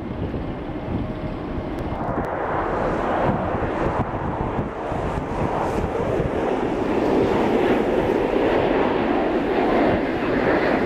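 Jet aircraft engine noise at an airport, a steady rushing sound that grows louder from about two seconds in, with wind buffeting the microphone.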